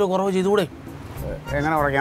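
Speech: a man speaking Malayalam in two short phrases, with a pause of nearly a second between them.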